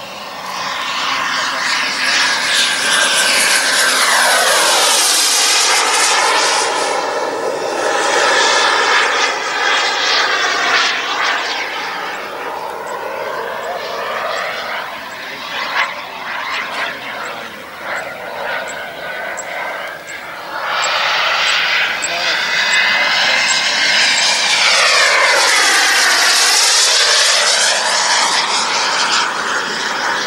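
The 14 kg-thrust Kingtech turbine of a Pilot Kit Predator model jet whining in flight, its pitch sweeping down and back up twice as the jet passes, loudest about four to ten seconds in and again over the last third.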